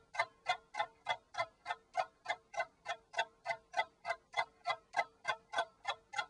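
Clock ticking steadily, about three ticks a second.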